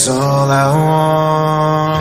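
Worship music: a voice holds a long sung note, sliding up into it within the first second and then holding it steady.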